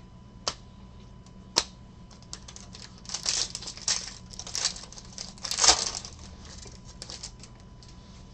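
Foil trading-card pack being torn open and crinkled by hand: a run of crackling rustles for a few seconds, loudest about six seconds in. Two sharp clicks come before it, about half a second and a second and a half in.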